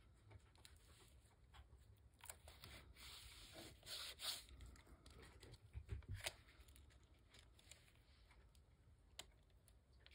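Faint peeling of adhesive tape off a paper craft tag, a short rasp about four seconds in, with light paper handling and small taps as the piece is repositioned.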